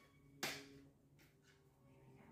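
Near silence with a faint steady hum, broken once about half a second in by a short, soft noise.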